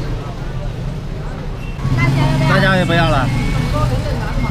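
Busy street noise dominated by a motor vehicle's low, steady engine hum close by. The hum grows louder about two seconds in, and a voice talks over it.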